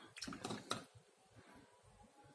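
Faint handling sounds of a watercolour brush being picked up and worked on paper: a few soft taps in the first second, then near quiet.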